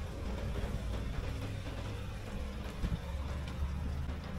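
Wind buffeting the microphone: an uneven low rumble that rises and falls throughout.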